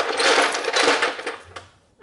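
Ice cubes clattering into a plastic Blendtec blender jar, a dense rattle that thins out and dies away over about a second and a half.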